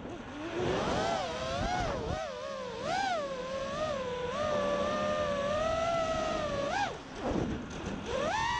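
EchoQuad 230 FPV racing quadcopter's brushless motors and propellers whining, the pitch rising and falling continuously with the throttle. The whine drops away briefly near the start and again about seven seconds in as the throttle is cut.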